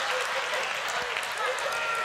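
A congregation applauding with scattered voices and laughter mixed in, a steady patter that fades slowly, in response to a joke's punchline.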